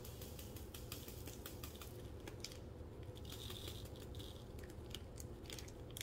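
Faint, irregular clicking of small diamond-painting drills rattling and sliding in a plastic tray as it is tilted and shaken.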